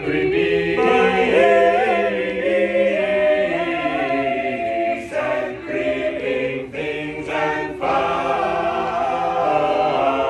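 A choir of mixed voices singing a hymn tune a cappella in several-part harmony, with short breaks between phrases in the second half.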